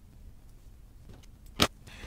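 Faint rustle of narrow ribbon being handled, then a single sharp metallic click from a pair of craft scissors about one and a half seconds in.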